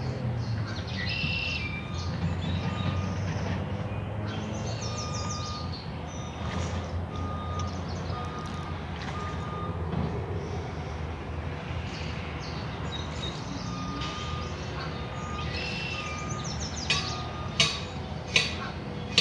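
Birds chirping and singing over a low steady rumble of traffic. A vehicle's reversing alarm beeps at an even pace through the middle and again later. A few sharp clicks come near the end.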